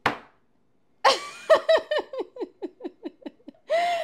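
A woman laughing in a fast run of short 'ha-ha' pulses, each falling in pitch, ending in a longer drawn-out sound. It opens with one sharp smack just before the laughter.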